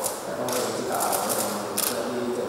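A person's voice speaking away from the microphone: a reporter's question in a room.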